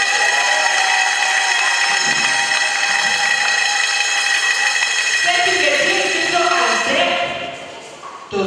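A single long, high, held vocal cry that glides up at its start and stays on one pitch for about seven seconds. Speaking voices come in under it toward the end, and then it fades.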